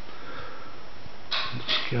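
Steady hiss of background room noise, then near the end two short sniffs, just before speech resumes.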